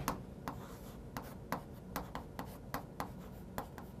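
Chalk writing on a chalkboard: a quick, uneven series of sharp taps and short scratches, about three a second, as the chalk strikes and drags across the board.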